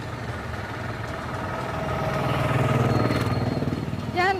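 A motor vehicle's engine running past on a street: a steady hum that grows louder over the first three seconds and then fades.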